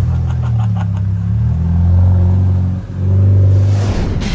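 Car engine and exhaust with a deep rumble revving up as the car pulls away, easing off briefly near three seconds in, then rising again.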